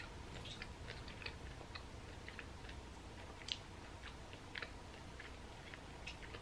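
Faint close-mouthed chewing of a piece of oven-dried strawberry, soft and chewy, with small wet clicks scattered through it and a couple of slightly sharper ones about halfway through.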